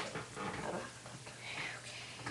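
A person whispering quietly, breathy and unvoiced.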